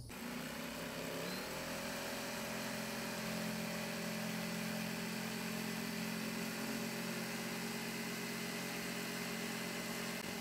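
Corded electric jigsaw cutting through a wooden greenhouse wall. The motor starts at once, picks up speed about a second in, then runs steadily as the blade saws through the wood.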